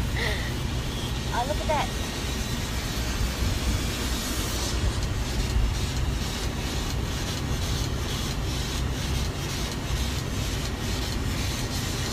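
Steady low rumble of engine and road noise inside a moving passenger van.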